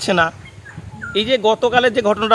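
A man's voice in short, hesitant vocal sounds, with a pause of under a second.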